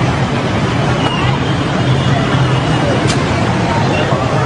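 Steady street noise: a low engine-like hum under the chatter of a crowd.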